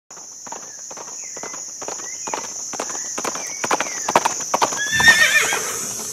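Hoofbeats of several running horses, growing louder, with a horse neighing about five seconds in. A steady high hiss runs underneath.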